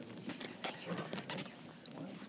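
Scattered small knocks, clicks and rustles of people shifting position on a bed and wheelchair, with faint murmured voices.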